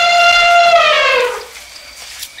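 Elephant trumpeting: one long call held at a steady pitch, then falling and fading about a second and a half in.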